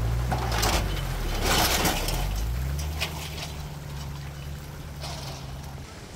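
A tow vehicle's engine idling while water splashes and rushes as a jon boat slides off a submerged trailer into the lake. The engine's pitch shifts during the first couple of seconds; the water noise dies away after about two and a half seconds, leaving a steady engine hum that slowly grows fainter.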